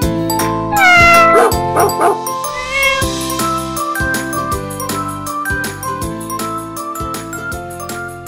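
Upbeat children's background music with tinkling chimes, and a cat's meow about a second in that falls in pitch and wavers, then a shorter meow near three seconds.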